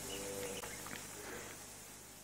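Quiet room tone: a faint steady hiss and low hum, with a faint short tone near the start.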